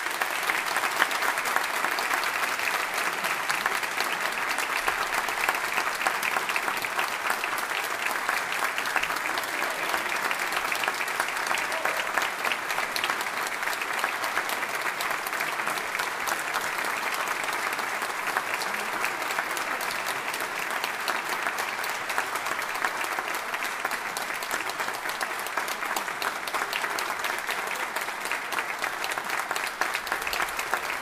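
Audience applauding, a dense and steady clapping that holds at an even level throughout.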